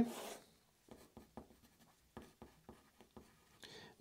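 Graphite pencil writing on paper: a scatter of short, faint scratches and ticks as the strokes of the letters go down.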